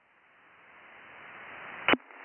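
Radio receiver hiss from an Icom IC-7300 on LSB, band-limited and rising steadily in level. A single sharp click comes near the end.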